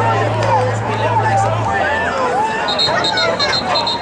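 Spectators' voices talking and calling out over each other, a steady babble of a sideline crowd. A low hum runs under it for the first couple of seconds, and a rapid pulsing high-pitched tone starts near the end.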